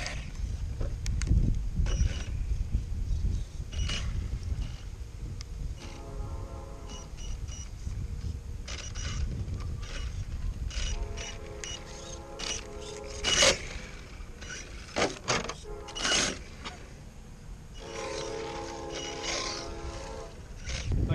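HPI Blitz electric RC truck being powered and tested in place: its motor hums a steady buzzing tone in three bursts of one to two seconds, about six, eleven and eighteen seconds in, among sharp clicks from handling the chassis and wind rumble on the microphone. The owner thinks the motor is junk.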